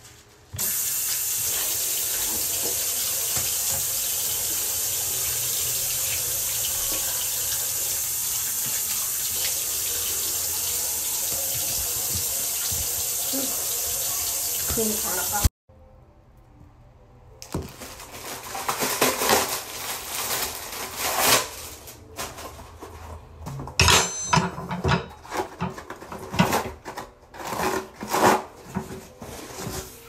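A bathroom sink tap runs steadily into the basin for about fifteen seconds, then stops suddenly. After a short pause, a hand scrubs and wipes the wet basin with cleaner, making an irregular rubbing and scraping sound with a few sharp knocks.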